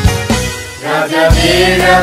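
Christian worship song with steady bass and drum beats; a singing voice comes in about a second in.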